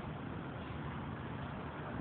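Steady low background hum and hiss with no distinct sound event.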